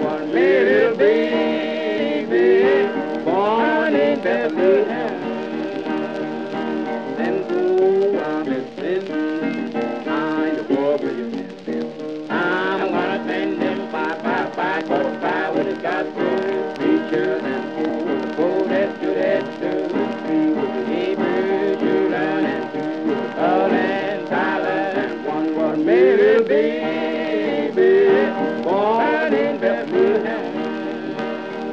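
Early guitar-evangelist gospel recording, a stretch between verses with no words: guitar playing with a gliding, wavering melody line over steady strumming.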